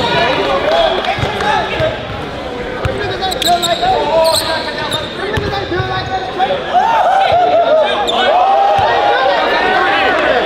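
Basketball dribbled on a hardwood gym floor, the bounces echoing in a large hall under steady crowd chatter. The crowd voices grow louder about seven seconds in.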